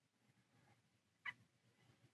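Near silence: room tone, with one very short, faint sound about a second in.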